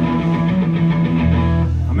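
Electric guitars and bass guitar holding sustained, ringing notes through a live PA between songs, with a deep bass note coming in just past halfway.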